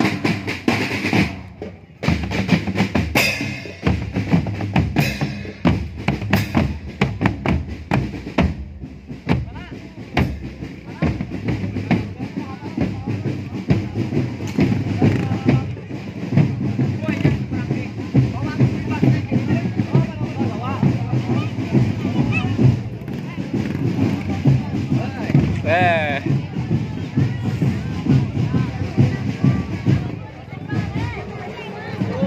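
Marching drumband percussion: snare drums, bass drums and crash cymbals beating a steady, fast marching rhythm, with a short break in the beat about two seconds in. Voices of people close by are mixed in.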